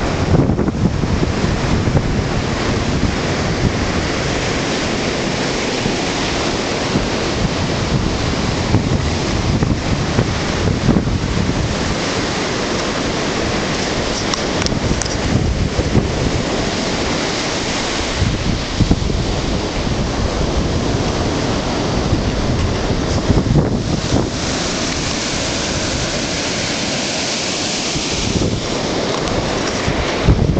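Wind blowing over the microphone together with ocean surf: a steady rushing noise.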